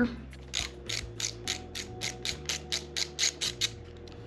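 Hand ratchet with a 10 mm socket clicking in a quick, even run, about five clicks a second, as it turns the motorcycle's brake lever pivot bolt loose. The clicking stops just before the end.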